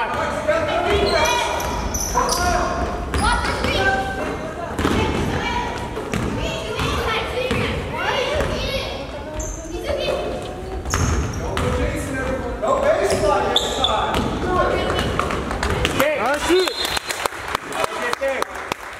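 Basketball game on a hardwood gym court: a basketball bouncing as it is dribbled, among many voices of players and spectators.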